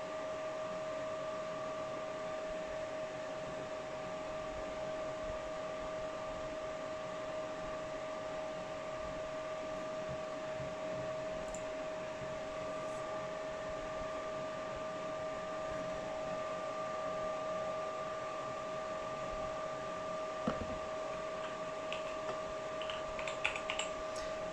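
Graphics-card fans of a running multi-GPU mining rig, spinning at about 80–90% with a steady whine. Near the end, a few keyboard key taps as a command is typed.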